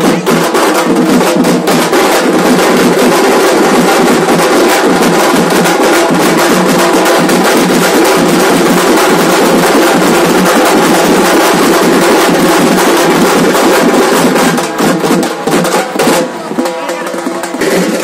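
A group of drummers beating stick-played drums in a loud, dense, fast rhythm, with a crowd's voices underneath. The drumming eases off a little about fifteen seconds in.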